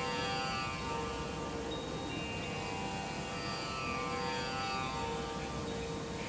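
Soft background music of long held tones, a steady meditative drone with no beat.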